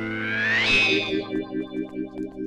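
Dramatic film background music: a held chord with a rising swell that peaks under a second in, then a pulsing rhythm of about four beats a second.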